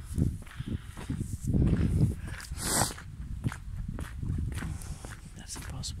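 Footsteps and rustling handling noise, a run of irregular low thumps with a brief brighter rustle about halfway through.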